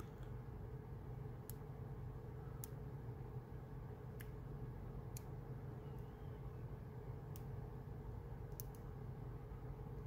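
Faint, scattered clicks of a dimple pick working the pins inside a brass Abus EC75 dimple padlock, about eight in ten seconds, over a steady low hum.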